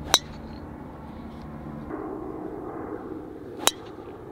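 Two crisp strikes of a golf club on a golf ball, sharp clicks with a short metallic ring, about three and a half seconds apart, over a low steady background hum.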